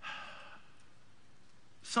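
A man's short, breathy sigh, about half a second long at the start, then a quiet pause.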